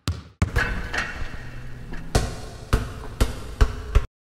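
Outro sound effect: a sustained rushing swell cut by sharp, heavy thuds, the last five coming at shortening intervals of about half a second.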